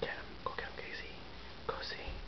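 Quiet whispering in a few short bursts, some with a gliding pitch.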